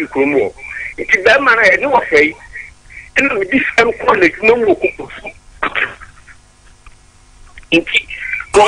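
Speech only: a person talking over a telephone line, with a short pause near the end.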